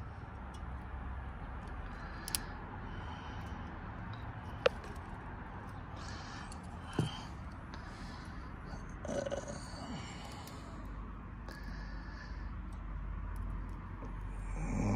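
Low steady background noise with a few faint, isolated clicks and taps from wiring and a test clip being handled.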